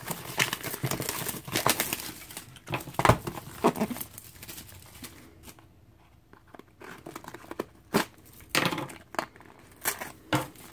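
Plastic shrink-wrap being torn and crinkled off a cardboard trading-card box, in dense crackling for the first four seconds. After a quieter stretch, a few separate sharp rustles come near the end.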